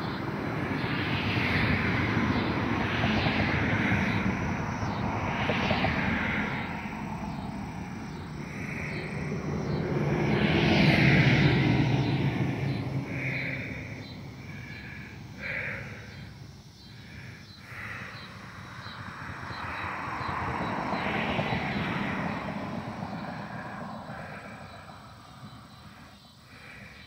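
Distant engine noise, a steady rumble that swells and fades, loudest about eleven seconds in and again around twenty-one seconds, then dying away near the end.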